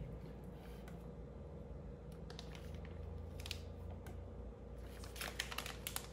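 Faint, scattered scrapes and taps of a spatula against the plastic food processor bowl as thick cream cheese spread is scooped into a plastic bag, with soft crinkles of the bag. The small sounds come more often near the end, over a low steady room hum.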